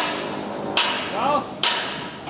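Sharp metallic knocks on the steel tower crane's climbing frame, two about a second apart, each ringing briefly.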